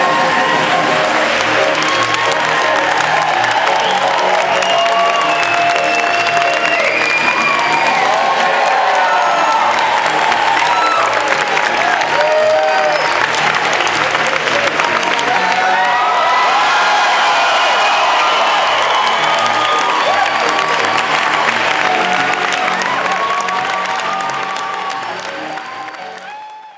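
A theatre audience applauding and cheering over music, the clapping dense and steady; it all fades out at the very end.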